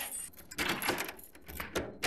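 Keys rattling and a door lock and handle clicking as a door is locked: a run of short clicks and jingles.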